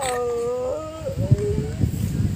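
A long howling call, held on one pitch and then dropping to a lower pitch before it dies away near the end.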